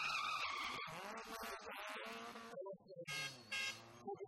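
Renault Clio rally car sliding through a tight turn with its tyres squealing, then its engine revving hard as it accelerates away. Another short, loud burst comes near the end.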